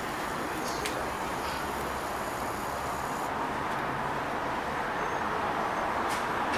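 Steady running noise of an LVS-97K articulated tram, a low rumble with a hiss over it. The higher hiss drops away about halfway through.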